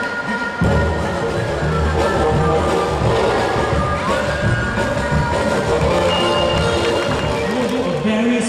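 Background music playing, with a brief drop in the bass in the first half second.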